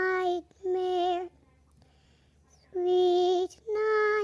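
A child singing unaccompanied, holding drawn-out notes with a slight waver: two short notes, a pause of about a second and a half, then two more.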